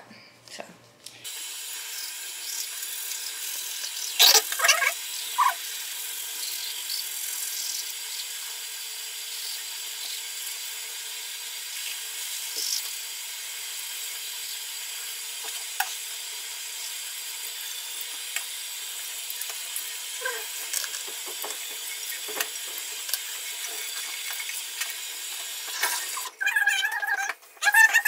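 Two people brushing their teeth at a bathroom sink: a steady hiss, with a few louder scrubbing sounds about four seconds in.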